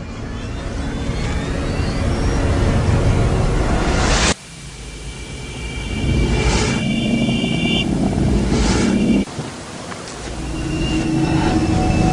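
Experimental noise soundtrack: layered rumbling, hissing noise that swells steadily louder and is cut off abruptly about four seconds and nine seconds in, each time restarting quieter and building again, with a few steady high tones in the middle section.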